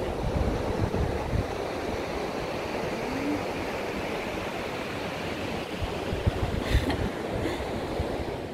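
Steady rushing noise of wind and surf on the beach, with low gusts buffeting the microphone.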